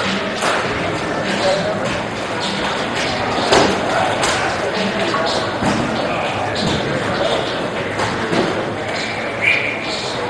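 Indistinct overlapping chatter of hockey players in a large, echoing rink hall, with scattered knocks and thuds; the sharpest knock comes about three and a half seconds in.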